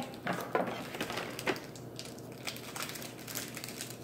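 Foil wrapper of a Pokémon card booster pack crinkling as it is handled and opened, in a string of short, irregular crackles.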